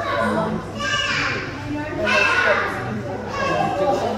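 Children's voices in a large indoor hall: indistinct chatter and calls in short bursts about once a second, over a steady low hum.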